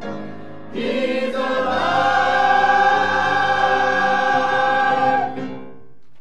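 Church choir singing, swelling just under a second in into one long held chord that is cut off about five seconds in, closing the song.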